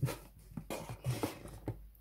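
Soft handling noises on a desk as an old hardcover book is shifted across a cutting mat, with a few light taps and clicks.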